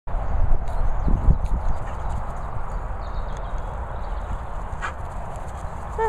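Low rumbling and irregular thumps on a handheld camera's microphone outdoors, heaviest in the first two seconds, the kind of noise that handling and walking with the camera make.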